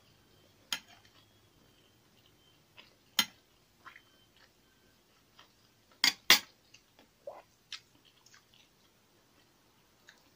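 A metal spoon clinking against a ceramic plate a few times, the loudest two clinks close together about six seconds in, with fainter small clicks and chewing sounds of eating between them.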